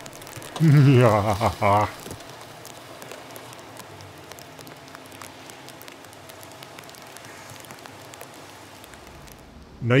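Potassium permanganate reacting with polyethylene glycol brake fluid: a steady fizzing hiss with faint scattered crackles as the smoking mixture ignites and burns.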